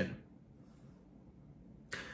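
A pause in a man's talk: the end of his last word, then near silence of room tone, then a brief click and breath noise near the end as he readies to speak again.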